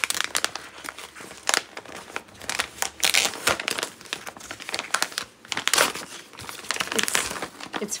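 Gift wrapping paper crinkling and rustling in irregular bursts as it is handled and unfolded.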